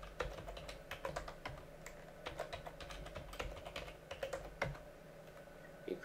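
Typing on a computer keyboard, a run of quick, irregular key clicks as a password is entered. The clicks thin out after about four and a half seconds.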